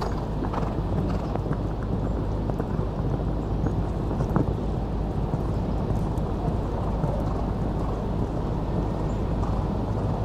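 Hoofbeats of a show-jumping horse cantering on sand arena footing, over a steady low rumble.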